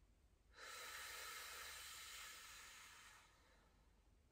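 One long breath out through the mouth. It starts sharply about half a second in and tapers away over nearly three seconds: a slow exhalation taken while holding an isometric exercise.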